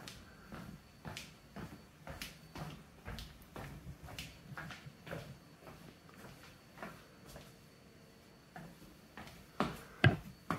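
Faint footsteps of someone walking, evenly spaced at about two steps a second, with a sharper knock near the end.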